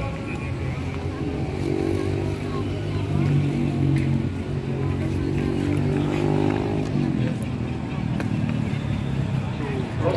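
Crowd chatter mixed with the low drone of motorcycle engines on the surrounding road. The steady hum swells about two seconds in and eases off around seven seconds.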